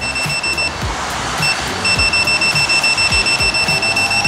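Begode Extreme electric unicycle's alarm beeping a steady high-pitched tone; it breaks off under a second in, blips once, and comes back to sound continuously. Background music with a steady beat plays underneath.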